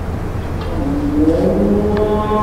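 Steady low hum and hiss. About a second in, a voice begins a long chanted note that slides upward, the start of a chant.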